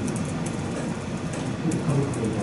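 Indistinct, low voices talking, not clear enough to make out words.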